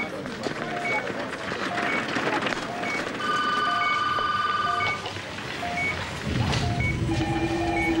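Hospital patient monitor beeping in a repeating low-high two-tone pattern, with a held multi-note alarm tone in the middle. Near the end a steady continuous tone sets in, the alarm of a patient going into cardiac arrest.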